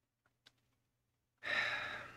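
A man's short sigh, a breathy exhalation starting about one and a half seconds in and fading out quickly, after near silence with a faint click.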